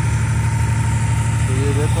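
A motor engine running at a steady idle: a loud, even low drone with a fast regular pulse and a thin steady whine above it.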